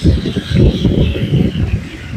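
Loud, uneven low rumble of wind buffeting the microphone aboard a moving river canoe. It starts suddenly.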